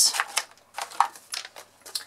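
Light handling sounds of cardstock and a sheet of foam adhesive dimensionals on a craft mat: a string of soft clicks and rustles.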